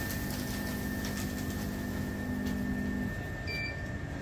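Packing machines running, a weigh-filling machine and a continuous band sealer, with a steady hum and a thin high whine. A lower motor hum stops about three seconds in, and a short electronic beep sounds near the end.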